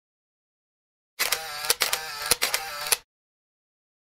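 Camera shutter sound effect starting about a second in: several sharp mechanical clicks over a whirring motor drive, lasting under two seconds and stopping suddenly.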